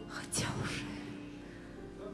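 A held chord from the accompaniment fades away. About half a second in, the singer makes a breathy, whispered vocal sound close on the microphone.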